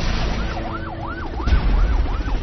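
An electronic siren yelping, its pitch sweeping up and down about three times a second, starting just under half a second in, over a low rumble that swells about a second and a half in.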